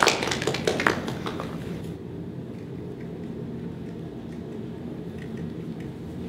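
A small group of people clapping, a short round of applause that dies away about a second in. After that a steady low room hum, with a few faint clicks.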